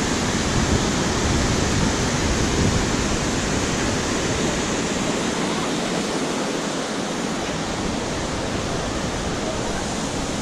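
Steady rush of river water pouring over a weir below, with a low rumble that eases about halfway through.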